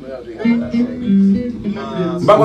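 A guitar playing a short phrase of held notes that change pitch every fraction of a second, with a man's voice over it.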